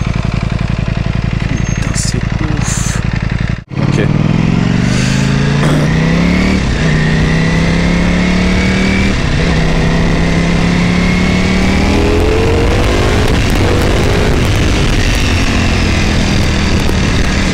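Ducati Panigale V4 S's V4 engine heard from the rider's position: a low even rumble at low revs for the first few seconds, then, after a brief dropout, the engine note climbs as the bike accelerates away, with breaks where it changes up a gear, then pulls on steadily.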